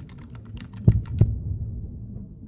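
Typing on a computer keyboard: a quick run of key clicks that thins out after about half a second, then two louder key strikes about a second in, over a low hum.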